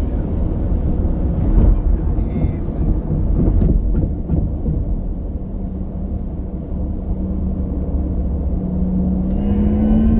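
Inside the cabin of a Porsche Taycan Turbo electric car at highway speed: a steady road and tyre rumble, joined in the second half by an electric drive hum that slowly rises in pitch as the car speeds up.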